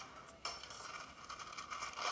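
Faint clinks and rustling of a bakery counter scene, heard through a television's speakers: a sudden start about half a second in, then a steady faint hiss with scattered small clicks.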